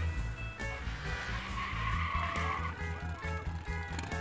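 Music with a steady beat, over which a motorcycle engine revs, with a rushing noise loudest around the middle.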